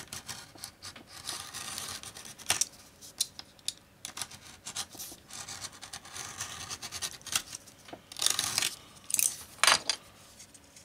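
Scratching and rubbing on a thick strip of undyed leather as it is marked and trimmed square, in several stretches with sharp clicks, loudest near the end.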